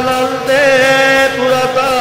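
A voice chanting a Sanskrit arati mantra, drawing out one long held note that wavers slightly in pitch.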